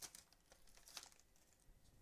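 Near silence with a few faint crinkles from a Yu-Gi-Oh! booster pack's foil wrapper as the cards are slid out: one at the start and another about a second in.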